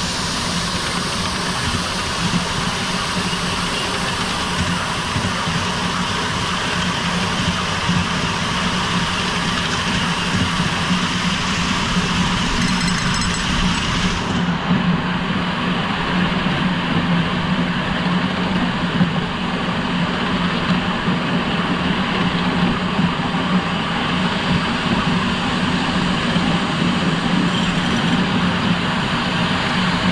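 Coal-fired miniature live-steam locomotive, a model of BR Standard 'Britannia' No. 70000, running steadily with its train, heard from the driving seat: a continuous mechanical rumble of the engine and wheels on the track. A high hiss drops away suddenly about halfway through.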